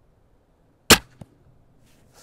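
An 850 lb medieval windlass crossbow with a lighter 140 g string, shooting a 60 g bolt: one sharp, loud crack about a second in as the string is loosed, then a faint knock about a third of a second later.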